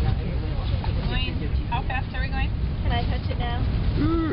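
High-speed train running at about 180 miles an hour, a steady low rumble heard from inside the passenger car, with voices over it.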